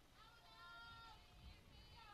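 Near silence, with faint high-pitched voices calling out in long, drawn-out shouts.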